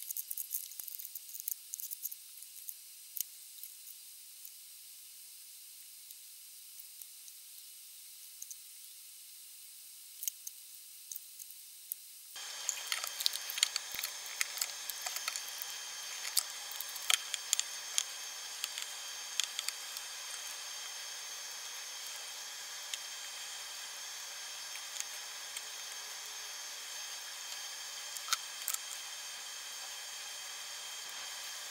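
Scattered small clicks and taps of hands handling a lithium cell pack and its wiring in an aluminium case, over a steady high hiss that jumps suddenly louder about twelve seconds in.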